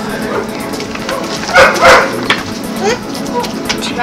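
A small dog barking, with two loud barks close together about a second and a half in.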